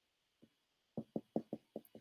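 Stylus pen tapping on a tablet screen while handwriting: a faint, quick run of about six taps in the second half.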